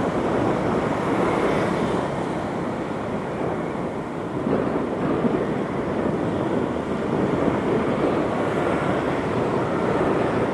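Steady rush of wind noise on the microphone of a moving bicycle, with dull street traffic underneath.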